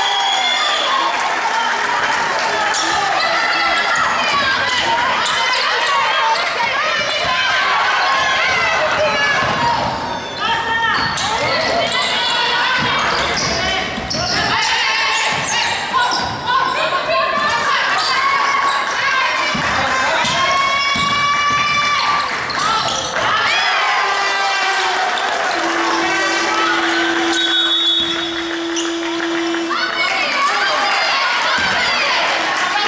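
Basketball being dribbled on a hardwood court in a large echoing gym, with players and benches shouting over it. A steady low tone sounds for about four seconds near the end.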